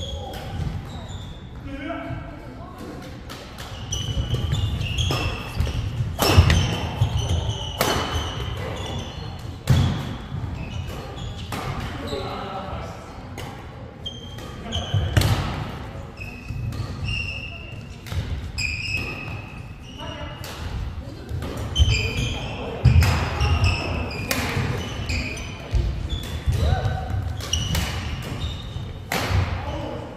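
Badminton doubles play on a wooden indoor court: sharp racket strikes on the shuttlecock and thudding footsteps, with short high squeaks among them, in a large hall.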